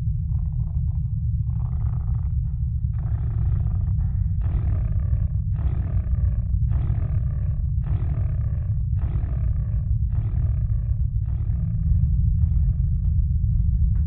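Film soundtrack: a deep steady rumble under a run of about ten rough, roar-like bursts, roughly one a second, that start about three seconds in and fade near the end.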